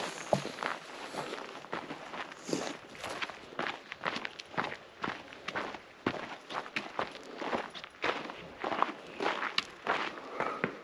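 Footsteps crunching on a dry dirt and gravel path at a steady walking pace, about two steps a second.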